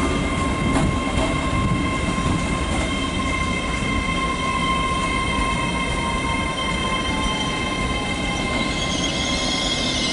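LNER Class 800 Azuma train running at the platform: a steady rumble with a thin whine over it, one tone sliding slightly lower late on. A hiss rises near the end.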